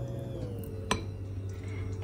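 A single light clink of a metal spoon against a ceramic bowl of batter about a second in, over a faint steady hum that dips slightly in pitch early on.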